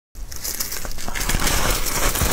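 A block of soft, snow-like white ice crackling and crunching as it is handled in gloved hands and bitten into, getting louder after about a second.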